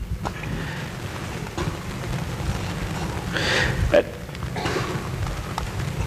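Lecture-hall room tone: a steady low hum under a faint even hiss, with a brief louder hiss a little past halfway and a faint click about four seconds in.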